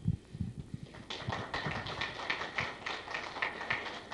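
Scattered applause from a small audience, starting about a second in as many irregular claps. Before it come a few low thumps from a handheld microphone being handled.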